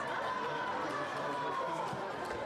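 Quick light footsteps of two foil fencers moving on the piste, over the steady noise of a large hall with voices in the background. A thin steady high tone runs under it, drifting slightly lower.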